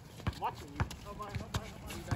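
A basketball dribbled on an outdoor hard court: a run of sharp bounces, about two a second, with faint player voices behind.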